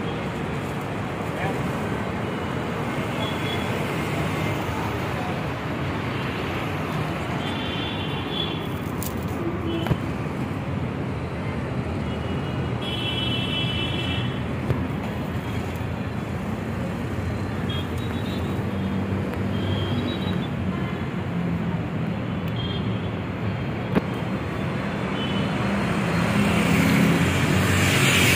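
Steady city road traffic noise. Two short high-pitched tones come about eight and thirteen seconds in, and two sharp clicks stand out. The traffic grows louder near the end.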